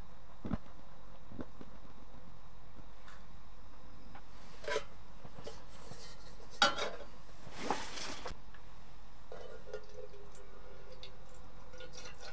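Metal camping kettle clinking and knocking as it is handled and set on a small butane canister stove, with a soft thump near the start, one sharp clank about six and a half seconds in and a brief rush of noise after it. Water is poured into the kettle near the end.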